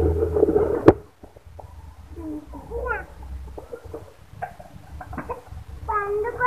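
A young child's voice: speech-like sound for about a second that ends in a sharp click, then a few short high squeals rising and falling in pitch, with scattered light clicks.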